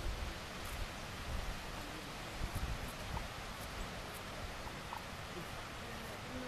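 Wind buffeting the camera's microphone in a pine forest: an irregular low rumble over a steady outdoor hiss, with a few faint high ticks.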